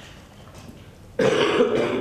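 Quiet room tone, then about a second in a person's voice starts suddenly and loud, close to a microphone.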